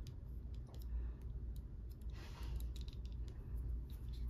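Faint scattered clicks of fingers handling a small plastic sound-disk unit and its metal pin back, over a low steady hum. A soft rush of noise a little past halfway through.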